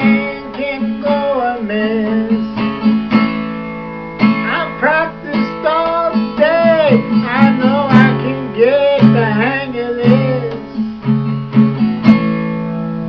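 A man singing a blues song to his own strummed acoustic guitar chords, the voice sliding and breaking over the ringing chords.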